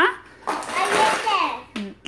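A small child's voice, speaking indistinctly for about a second.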